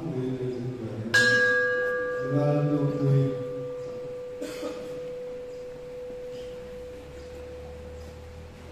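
A brass bell struck once about a second in, ringing on with a clear tone whose higher overtones die away within a few seconds while the main note lingers and slowly fades.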